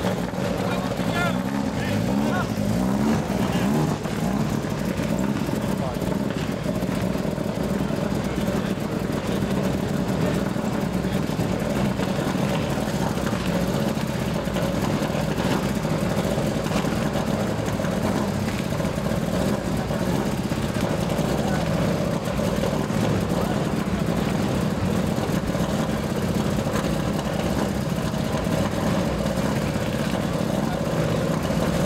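Mitsubishi Lancer Evolution IX rally car's turbocharged four-cylinder engine idling steadily at low speed, with people talking in the background.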